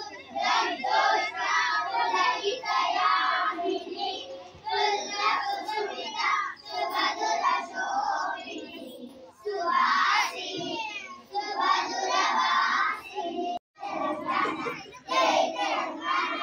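A group of schoolchildren singing together in unison, in phrases a few seconds long with short breaks between them.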